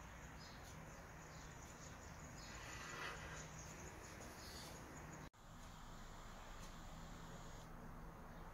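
Near silence: faint room tone with a low steady hum, broken by a brief dropout about five seconds in.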